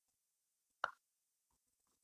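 Near silence, broken by a single short, soft click a little under a second in.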